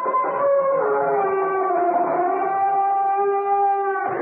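Radio-drama sound effect of a door creaking slowly on its hinges: one long, drawn-out creak whose pitch wavers and slides down about a second in, then holds. It is the creaking door that signs off CBS Radio Mystery Theater.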